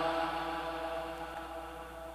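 Lingering reverberation of a man's voice after a spoken phrase, fading slowly away through the pause.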